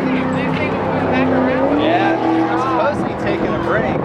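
Crowd chatter, with a steady engine drone from a passing motor vehicle underneath that dips slightly in pitch, then climbs back up about two seconds in.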